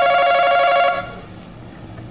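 Game show podium buzzer sounding as a contestant hits his button to answer: one loud, steady electronic tone of two pitches together, cutting off about a second in.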